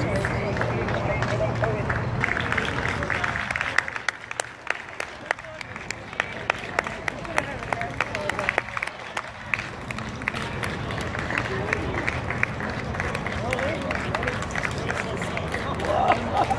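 Scattered, irregular hand clapping from spectators along the street, with crowd voices in the background.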